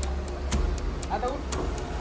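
Sharp ticking about twice a second, like a clock, over a steady low rumble, with a short voice sound about a second in.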